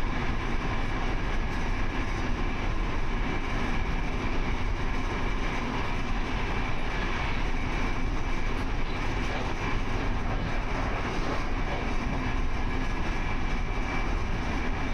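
Steady running noise of an Intercity passenger coach at speed, heard at its rear end: wheels on rail and rushing air, with a faint steady high whine.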